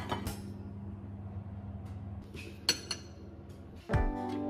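Light clinks of kitchenware, a few scattered knocks and taps, over a steady low hum. Guitar music comes in right at the end.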